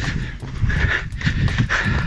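A runner's heavy breathing and rhythmic footfalls while jogging, close to the microphone.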